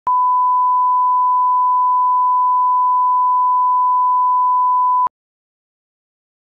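Steady 1 kHz broadcast line-up tone, one unbroken pure beep lasting about five seconds, with a click as it starts and a click as it cuts off suddenly.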